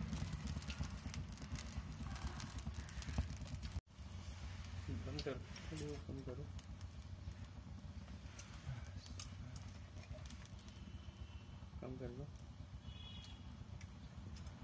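A lit gas-stove burner runs with a low, steady noise, joined by a few faint clicks and taps. The sound cuts out briefly just before four seconds in.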